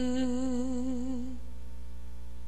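A woman's voice holding a long sung note with a slow vibrato at the end of a phrase, fading out a little past halfway, over a soft, steady backing of low sustained notes.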